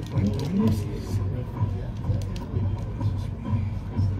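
Marching band music with a steady low drum beat, with people talking close by.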